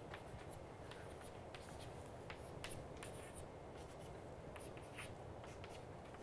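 Chalk writing on a chalkboard: a string of short, faint taps and scratches as small numerals are chalked one after another, over a steady room hiss.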